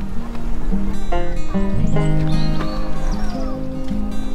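Instrumental background music of held, stepping notes, with a few short gliding whistle-like sounds over it about two to three seconds in.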